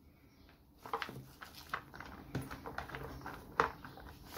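Sliced onion half-rings being spread by hand across the bottom of a plastic container: soft irregular taps and rustles of onion against the plastic, starting about a second in, with one louder tap near the end.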